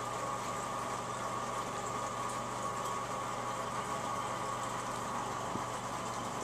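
Steady mechanical hum of the aquarium's water pumps driving the current, with a constant faint whine over it.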